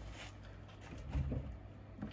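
Faint handling noise: a few light knocks and rustles as a plastic bottle is picked up off a wooden table.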